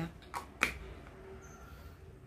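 Two short, sharp clicks about a quarter second apart as a plastic fragrance-mist spray bottle is handled.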